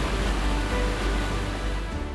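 Background music with a deep bass under a steady rush of splashing, churning water.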